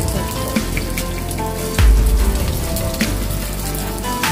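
Eggs frying in a pan, a steady crackling sizzle, over background music with a regular beat and a deep bass hit about two seconds in.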